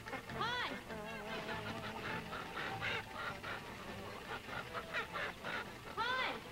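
Poultry squawking and honking, several short calls that slide up and then down in pitch, scattered through the few seconds.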